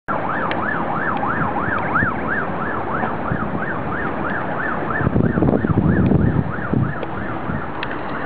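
Emergency vehicle siren wailing in a fast up-and-down yelp, about three sweeps a second. A low rumbling noise runs underneath and is strongest from about five to seven seconds in.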